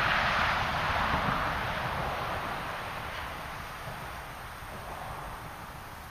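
Rustling noise with a low, uneven buffeting of wind, fading gradually over a few seconds.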